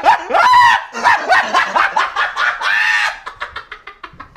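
A person laughing hard, in high-pitched repeated bursts that die down about three seconds in.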